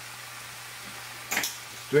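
Sea scallops simmering in a frying pan of white wine, clam juice and sherry: a soft, steady sizzle, with a brief click about one and a half seconds in.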